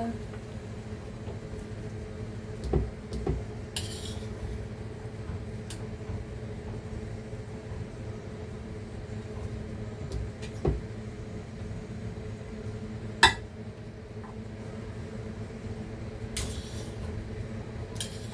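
A metal cooking utensil clicking and knocking against a stainless steel pan and a glass baking dish as pieces of boiled pork are lifted out of the cooking liquid and set down. The knocks are sparse, with one sharp click about two-thirds of the way through, over a steady low kitchen hum.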